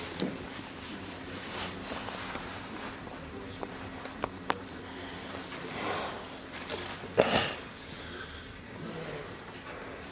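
Room tone with a steady low hum, a few light clicks near the middle, and a short noisy burst about seven seconds in, which is the loudest sound.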